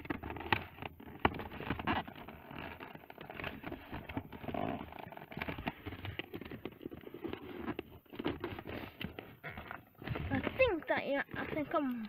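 Cardboard toy box being opened by hand: irregular scraping and crackling of the card flaps, with scattered small clicks and taps.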